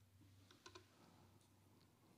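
Near silence: room tone with a faint low hum and a few faint short clicks about half a second in.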